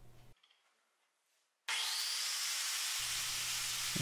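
Angle grinder with a cutting wheel switched on after near silence, a whine rising as the wheel spins up about halfway in, then running with a steady high-pitched hiss.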